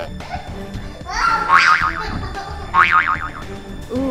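Two cartoon 'boing' spring sound effects, one about a second in and one near three seconds, each a wobbling up-and-down pitch glide, over upbeat background music.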